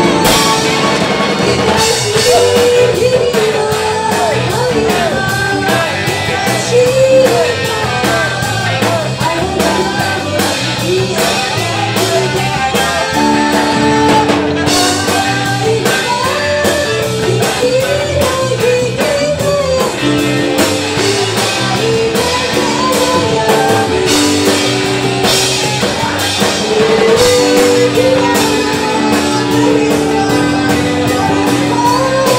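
A rock band playing live, with a drum kit keeping a steady beat under guitar, held bass notes and a bending melodic line.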